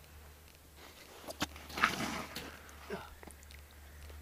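Water and slush sloshing in an ice-fishing hole as a hooked pickerel is pulled out by hand. A few sharp clicks come first, then a louder noisy burst about two seconds in.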